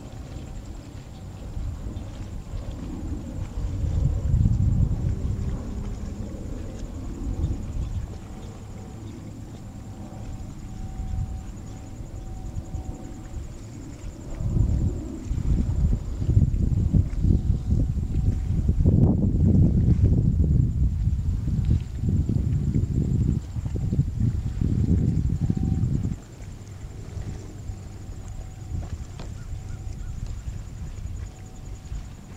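Gusty wind buffeting the microphone ahead of a storm: low, uneven noise that swells once about four seconds in, then rises again from about fifteen seconds and blows hard for ten seconds before dropping back suddenly.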